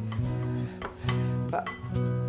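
Background music with guitar, its notes ringing on and changing every half second or so.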